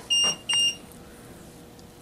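Mug press alarm beeping: two short, high, steady beeps close together near the start, then quiet room tone with a faint hum. The alarm signals that the press's 60-second countdown has finished.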